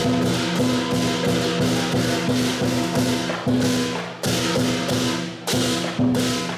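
Southern lion dance percussion of drum, gong and cymbals beating steadily at about three strikes a second, the ringing of the metal held between strikes. The playing stops short twice in the second half and comes straight back in.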